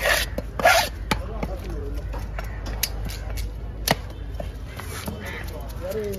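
A large fish-cutting knife scraping in two short rasps, then several sharp single knocks of the blade against a wooden chopping log, the loudest about four seconds in.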